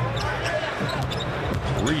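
A basketball being dribbled on a hardwood court over a steady arena crowd murmur, with a commentator's voice coming in near the end.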